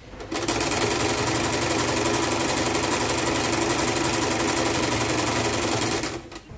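Janome sewing machine running at a steady fast speed, stitching down a folded fabric hem. It starts about half a second in.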